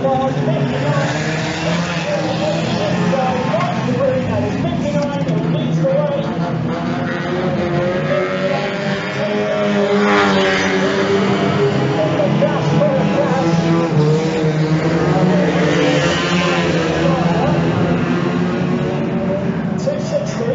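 Engines of several banger racing cars revving as they race around a shale oval. One car passes close by about halfway through, louder as it goes by.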